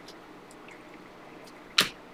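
Panini Prizm trading cards being slid through a stack by hand: a few faint ticks, then one sharp snap of a card near the end.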